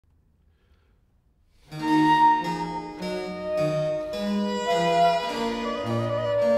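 The opening of a Baroque trio sonata's Andante starts after about a second and a half of near silence. Transverse flute and violin play interweaving melodic lines over a basso continuo of harpsichord and cello, with the bass moving in steady steps.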